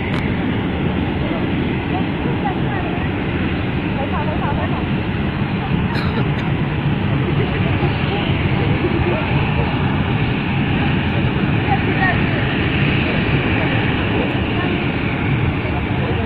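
Loud, steady rushing noise with scattered voices of people faintly mixed in.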